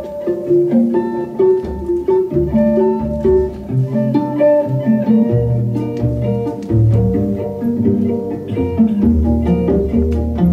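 Live jazz played by guitar and cello: a semi-hollow electric guitar picks a line of short separate notes over the cello's sustained low notes.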